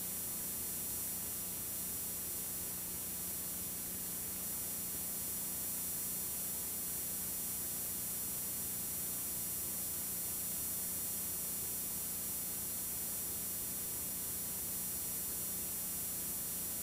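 Steady hiss with a low, even hum and no other sound: the noise of a blank stretch of videotape.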